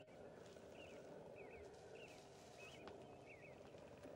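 Near silence outdoors, with faint, short chirps repeating about twice a second from a small animal calling.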